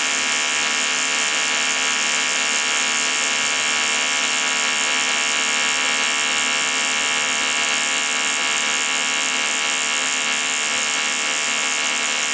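TIG welding arc on aluminium, running AC with a steady, loud buzz that holds unbroken as filler rod is fed into the molten pool.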